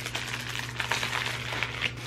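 Soft rustling and light scattered clicks of packaged items being handled while rummaging for the next one, over a low steady hum.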